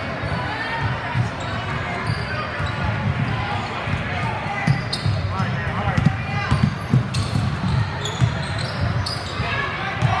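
Basketball being dribbled on a hardwood gym floor, with repeated bounces, as players run the court. Sneakers squeak on the floor a few times, and players and spectators call out.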